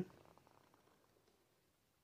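Near silence: room tone, with a few faint ticks in the first half second.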